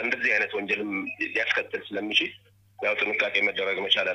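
Speech only: a person talking in a thin, phone-like voice, with a short pause a little over halfway through.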